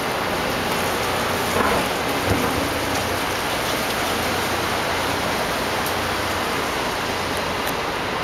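Steady, loud rushing noise of outdoor city street ambience with no distinct events, apart from two small bumps about one and a half and two and a quarter seconds in.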